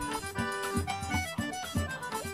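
Instrumental background music: a sustained melody over a steady, regular bass beat.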